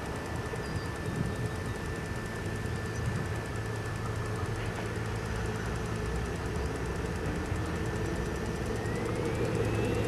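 Radio-controlled model helicopter's engine running on the ground: a steady high whine over a low hum, growing slowly louder, with the whine starting to rise in pitch near the end.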